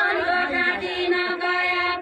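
A group of voices singing a deuda, the Far-western Nepali folk song of the deuda dance, in a chant-like line with long held notes.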